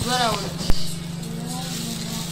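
A thin plastic bag rustling as a hand reaches into it, over a steady low hum. A brief voice at the start and a single sharp click a little under a second in.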